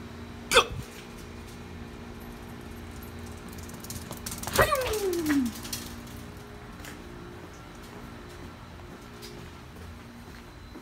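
Steady hum with a few level tones, typical of air-conditioning units. About halfway through comes one loud, high call that slides down in pitch over about a second.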